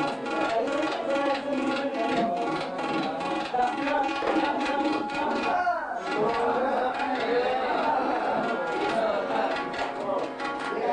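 Hindustani classical singing with tabla accompaniment: a male voice holds and glides between notes, with a gliding phrase about six seconds in, over steady tabla strokes.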